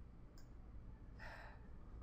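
Near silence: quiet room tone with a faint click early on and a faint breath a little past a second in.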